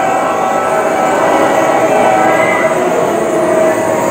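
Several Hmong qeej, bamboo free-reed mouth organs, played together: a steady, loud drone of held chords.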